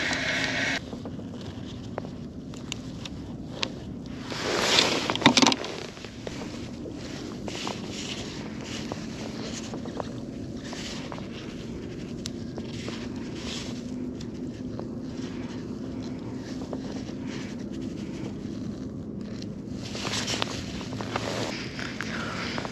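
Light wind on the microphone with small scrapes and ticks from hands handling fishing line in a kayak, and a louder rush of noise about four to five seconds in.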